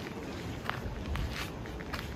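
Footsteps on stone paving: a few short scuffs and clicks of shoes on granite flagstones over a low rumble.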